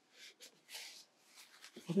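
Faint, brief scratchy strokes of a paintbrush on watercolour paper, a few light touches in a row.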